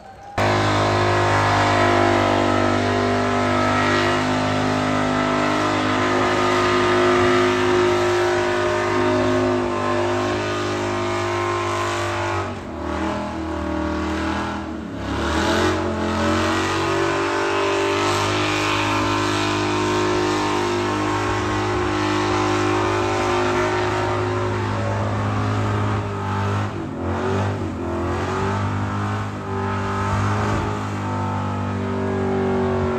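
Pickup truck engine held at high revs in a burnout, rear tyres spinning in the dirt. It starts abruptly, drops and climbs back in pitch about halfway through, and runs on steadily.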